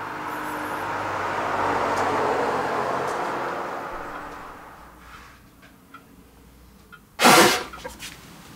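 A rush of noise that swells and fades over the first five seconds, like a car passing by. About seven seconds in comes a single loud sneeze, which stands for a flu symptom.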